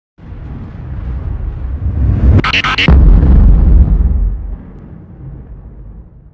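Logo intro sound effect: a low rumble swells for about two seconds, then a short crackling burst of sharp cracks, followed by the loudest part, a deep low rumble that dies away over the next couple of seconds.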